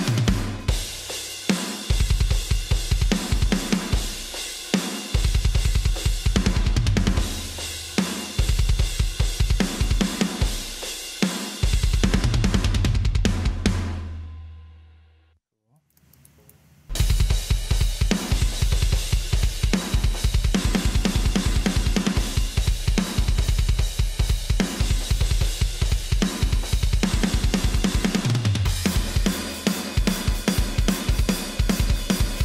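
Metal drum multitrack playing through a heavily compressed and saturated drum bus: rapid kick drum, snare and cymbals, with a warm tone that is probably too much. The playback stops about halfway through, rings out to silence, and starts again a second or two later.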